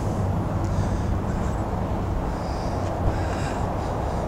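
Steady low mechanical hum under outdoor background noise, even in level.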